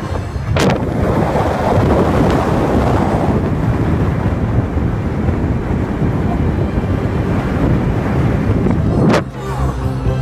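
Wind rushing over the microphone with road noise from a moving car, starting after a sharp knock about half a second in and cutting off suddenly near the end.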